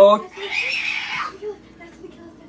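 A man's lecturing voice: a short word at the start, then a breathy hiss lasting most of a second, then a quiet pause.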